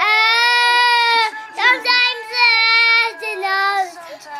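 A young girl singing loudly in a high voice, holding long notes with a short break about a second in.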